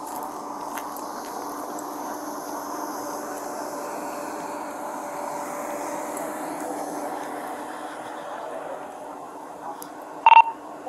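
Vehicles idling: a steady, even engine hum with a constant low drone.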